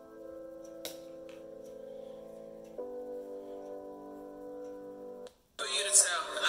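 Music played through the Essential Phone's built-in speaker: sustained keyboard-like chords that shift about halfway through, thin and tinny with little bass. The chords cut off near the end, and louder, fuller music starts just before the end.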